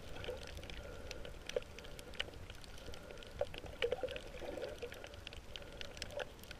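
Underwater reef ambience picked up by a submerged camera: water movement with scattered sharp clicks and crackles over a low rumble and a faint steady hum.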